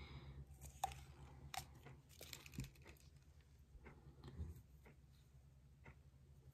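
Near silence: a low steady room hum with faint clicks and rustles from handling a small plastic protein-test swab tube.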